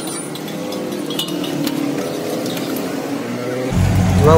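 Steel spatulas clinking and scraping a few times on large iron tawas while eggs fry, against a steady hiss.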